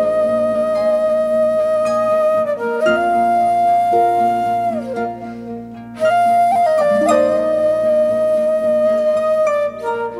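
Wooden flute playing a slow melody in long held notes over harp accompaniment, in a traditional Irish style, with a brief lull about five seconds in.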